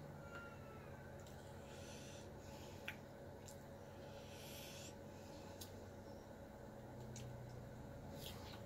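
Near silence: a low steady room hum, with one faint click about three seconds in and a few softer ticks after it.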